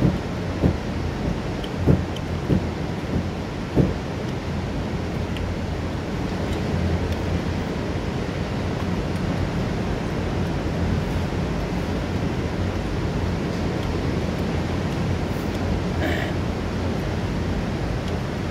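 Steady rush of a tall waterfall and the white-water river at its foot, a deep even noise, with a few short thumps in the first four seconds.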